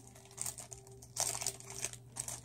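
Tissue paper crinkling as hands rummage through it: a short rustle about half a second in, then a longer, louder crinkle in the second half.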